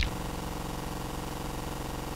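A steady buzzing hum with an even hiss beneath it, unchanging in pitch and level.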